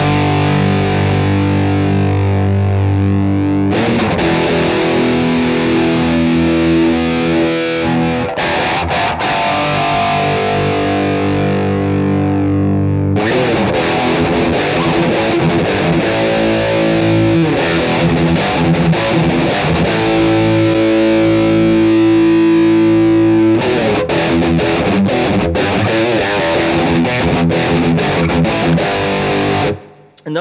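Overdriven electric guitar played through an amp, with a Boss EQ-200 equalizer in front of the amp. The EQ cuts some low end before the amp so the amp responds quicker, a Tube Screamer-style trick. Held chords and riffs come in several phrases, and the playing stops just before the end.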